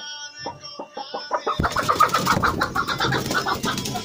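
A hen disturbed on her nest, clucking and squawking, with a loud rustle of straw and feathers starting about a second and a half in.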